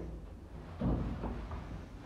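The double-speed sliding doors of a Pickerings passenger lift closing, with one low thud about a second in.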